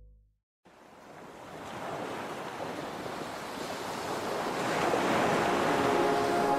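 A lounge track fades out into a brief silence, then the rush of ocean surf swells up steadily, opening the next track of a chill-out mix.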